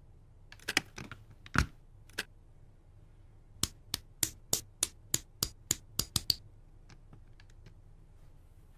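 Plastic Lego Technic pieces clicking and snapping together as they are assembled by hand. A few clicks in the first two seconds, then a quick run of about a dozen sharp clicks, roughly four a second, with fainter ticks near the end.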